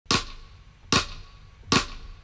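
Drumsticks clicked together three times, evenly spaced a little under a second apart: a drummer's count-in to start the song.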